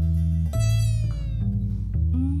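Live acoustic band music: upright bass notes and acoustic guitar, with a held melody note above that bends slightly downward from about half a second in.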